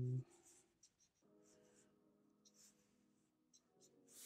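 Faint scratchy strokes of a black felt-tip marker on paper, short and irregular. A man's held hum cuts off just after the start.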